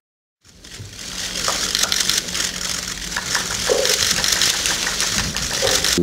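Room noise of a press conference hall fading in after about half a second of silence: a steady hiss with a low, even hum and a few faint scattered clicks.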